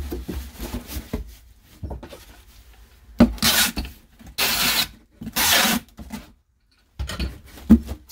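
Handheld tape gun pulling packing tape across the bottom of a cardboard box, three strips of about half a second each, with rustling as the flaps are folded before and a thump near the end as the box is moved.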